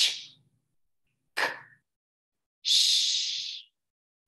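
A woman saying the three sounds of the phonogram ch on their own, unvoiced: a short 'ch', a brief 'k' about a second later, then a long 'shh' hiss lasting about a second.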